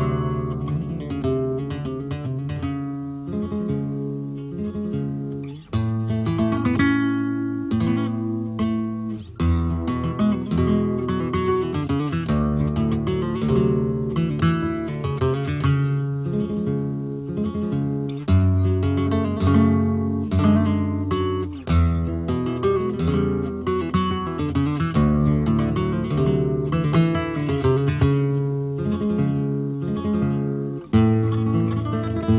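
Solo flamenco guitar playing a rondeña, mixing single-note melodic passages with strummed chords.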